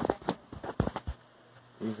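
A few sharp clicks and knocks in quick succession during the first second, then a quiet stretch with faint room tone.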